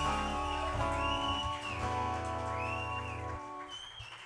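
Final chord of a live acoustic-guitar and band song ringing out and fading, its low notes stopping about three and a half seconds in. Long whistles from the audience sound over it, three times.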